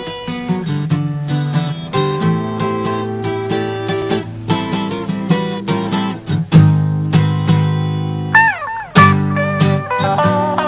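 Pop-rock band playing an instrumental passage led by guitars, with plucked notes and chords over a bass line. About eight seconds in, an electric guitar note slides down in pitch, and the held notes that follow waver.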